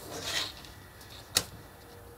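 A chipboard strip and clear plastic ruler handled on a cutting mat: a short sliding rustle, then one sharp tap about a second and a half in.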